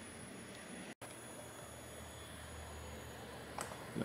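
Quiet room tone: a faint steady hiss with a low hum underneath, broken by a brief dropout about a second in, and a short click near the end.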